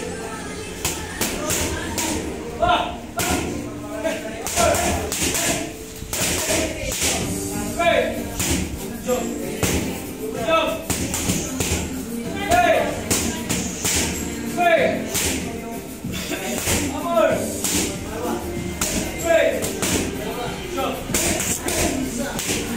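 Boxing gloves striking focus mitts: an irregular run of sharp smacks in quick combinations, over background music with a singing voice.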